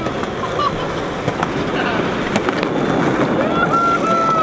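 Several people yelling and cheering over skateboard wheels rolling on concrete, with one long high-pitched cry near the end.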